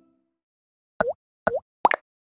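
Three quick cartoon-style pop sound effects, each a short pop whose pitch dips and then swoops back up, coming about a second in and then about every half second.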